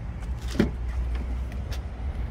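Front door of a Volvo XC40 being opened by hand: a few short clicks from the handle and latch, the strongest about half a second in, over a steady low rumble.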